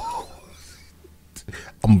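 A short breathy vocal sound trails off, then a quiet pause with a few small mouth clicks, before a man starts speaking near the end.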